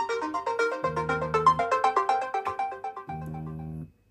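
Samsung Galaxy S21 Ultra's speaker playing the ringtone for an incoming WhatsApp voice call: a quick run of melodic notes over a repeating bass. It breaks off briefly near the end and starts again as it loops.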